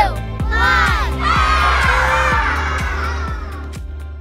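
Upbeat countdown intro music with a steady beat of about four strokes a second and swooping pitch glides; about a second in, a crowd cheer swells over it, then everything fades out just before the end.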